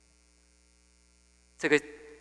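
Faint, steady electrical mains hum in the microphone's audio line during a pause in speech, then a man's voice saying two syllables near the end.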